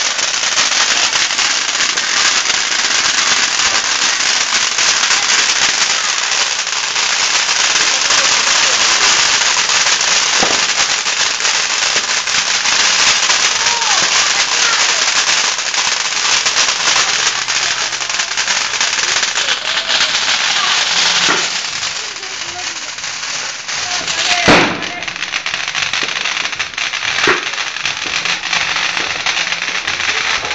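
A Judas' belt, a long string of small firecrackers, going off in a rapid, unbroken crackle of bangs. About 24 seconds in there is one louder bang, after which the crackle goes on more thinly.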